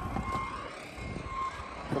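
Vehicle backup alarm beeping, one steady high tone repeated roughly once a second, over a low rumble.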